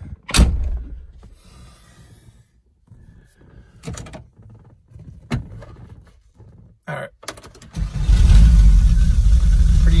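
Volkswagen Syncro van engine starting from cold about eight seconds in, catching almost immediately and settling into a steady low idle, heard from inside the cab. Before it, scattered clicks and knocks in the cab.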